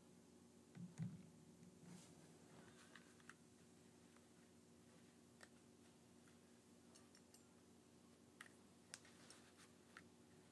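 Near silence: faint room tone with a low steady hum and a few soft, scattered clicks, some of them from headphones being handled.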